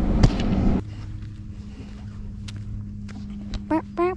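A low rumble inside a car that cuts off under a second in. It gives way to a faint, steady low hum with a few small clicks.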